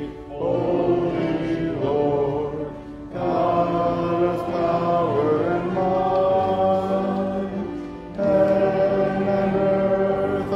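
Voices singing a hymn in slow sung phrases, with short breaths between phrases about three and eight seconds in.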